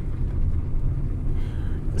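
A car driving along, its engine and road noise a low, steady rumble heard from inside the cabin.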